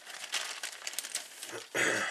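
Crinkling and rustling of a clear plastic kit bag as a grey plastic model-kit sprue is drawn out of it, with light clicks of the plastic frame. Near the end a person clears their throat.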